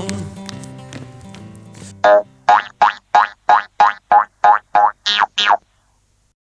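A children's song ends, its last notes fading out over about two seconds. Then comes a quick run of eleven short, pitched cartoon sound-effect blips, about three a second, stopping just before the end.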